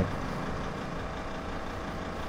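Ambulance engine idling, a steady low rumble with a faint constant hum.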